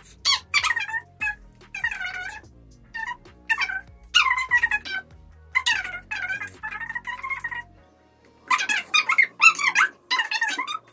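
A girl's voice sped up into high-pitched, squeaky chipmunk-like chatter in short bursts, over background music.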